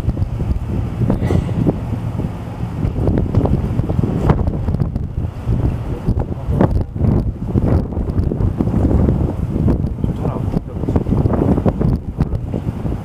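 Wind blowing across the camera microphone: a loud, uneven low rumble that swells and dips in gusts.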